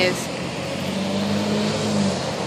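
Street traffic: a motor vehicle engine's steady low hum comes in about a second in, over a constant wash of city street noise.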